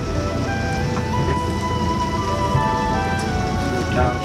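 Background music of long held notes that step slowly from one pitch to another, over the low, steady rumble of the motorhome on the road.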